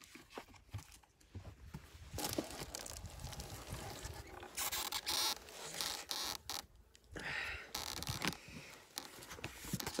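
Irregular scraping, scratching and rustling as a wooden beehive inner cover is pried with a metal hive tool and lifted off the hive, louder in a couple of stretches past the middle.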